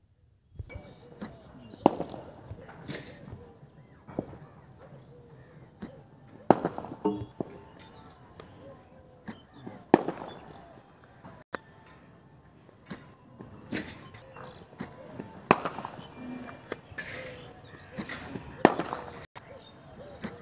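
A cricket bat striking balls in a practice net: about five loud, sharp cracks a few seconds apart, with quieter knocks in between.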